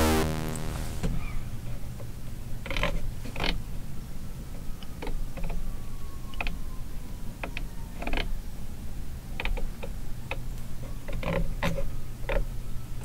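A synthesizer tone dies away in the first second, then scattered, irregular clicks and taps from fingers working the synth's touchscreen and controls, over a steady low hum.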